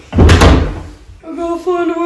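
A wooden closet door banging once, loud and sudden, about a quarter second in; a second later a child starts shouting.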